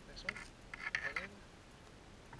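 A few sharp metallic clicks of a steel cable-seal wire being worked through the seal's red locking body, mixed with a low voice.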